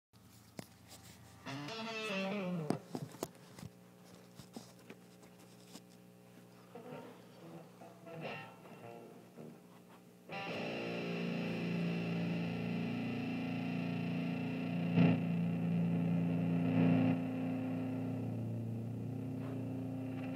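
Distorted electric guitar in a doom-metal style: a short sliding note about two seconds in and scattered quiet notes and string noise, then from about ten seconds in a heavy distorted chord held and ringing on.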